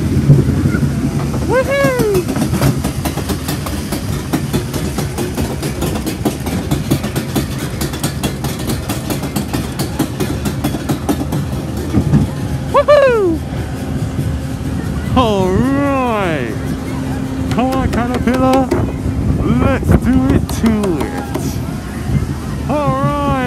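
Small family roller coaster cars running on their track, a steady low rumble with rapid rattling clicks. Riders' short rising-and-falling whoops come about two seconds in and several times in the second half.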